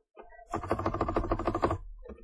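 Computer keyboard keys pressed in a fast run of clicks lasting just over a second, starting about half a second in, after a couple of single taps. The keystrokes are repeated backspace presses clearing a typed entry from a text field.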